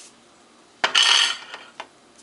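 Metal kitchenware clattering about a second in, a sharp knock with a brief ring, followed by a lighter click near the end.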